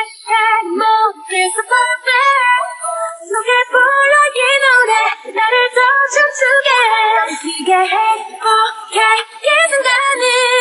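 Female K-pop vocal sung a cappella, with no instruments: a run of short melodic sung phrases.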